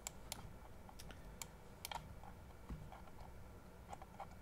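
Faint, irregular clicks from a computer keyboard and mouse in use, a few clicks spread over the seconds with gaps between them.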